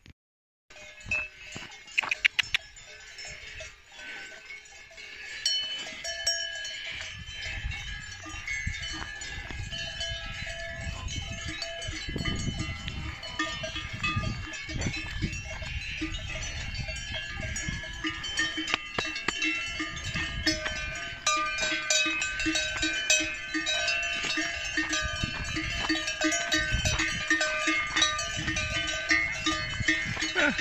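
Several cowbells clanking and ringing unevenly on cows walking ahead along a track. The clanking builds up a few seconds in and gets denser toward the end.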